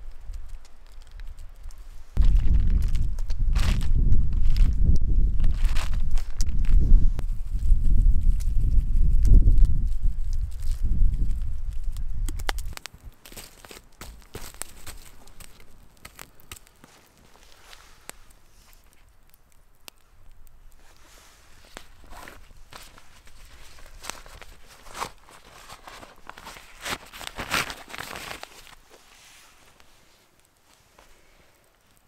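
Loud low rumble of wind buffeting the microphone for about ten seconds, then a campfire of birch logs crackling, with scattered knocks and rustles as the wood is moved.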